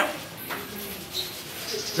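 Faint, low cooing of a bird in the background.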